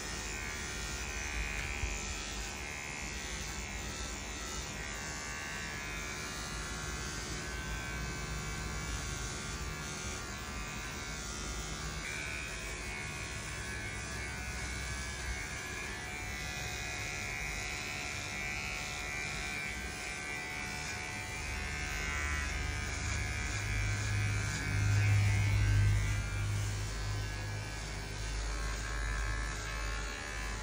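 Cordless electric pet clipper buzzing steadily as it shaves a dog's belly fur, clipping the surgical site for a spay. Its pitch shifts a little now and then, and a louder low rumble joins it about three-quarters of the way in.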